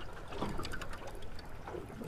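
Faint water lapping and trickling against the side of a small boat, with a few light irregular clicks.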